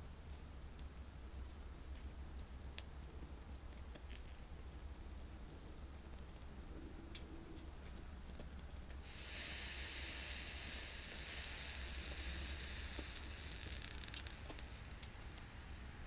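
Pine-twig fire burning in a small TLUD wood-gas stove under a pot of water, with a few sharp crackles in the first half. About nine seconds in a steady sizzling hiss starts and lasts about five seconds before dying away.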